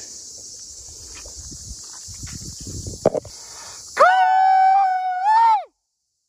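A man's long, loud call out to someone far off, held on one high pitch for about a second and a half, then rising and dropping before it stops. Before the call, a steady high chorus of crickets runs underneath.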